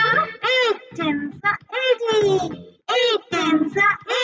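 A child's voice singing the eight times table over light backing music, in short sung phrases.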